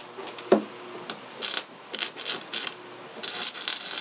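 Stick-welding arc at the electrode tip, sputtering in irregular crackles, then settling into a steady frying crackle near the end as the arc holds.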